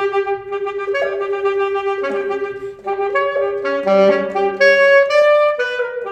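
Unaccompanied alto saxophone playing a contemporary solo piece: a long held note, then a quicker series of changing notes that grows louder around four to five seconds in.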